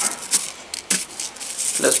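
Epsom salt crystals crunching and scraping on paper as a glue-coated candle is rolled through them: an irregular run of small, scratchy clicks.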